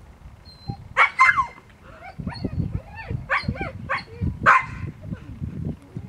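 A dog barking: loud sharp barks about a second in and again near the end, with a run of shorter barks between.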